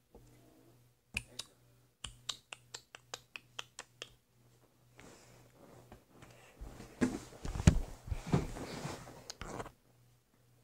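A quick run of light, sharp clicks, about five a second, then low rumbling with a few heavier knocks later on.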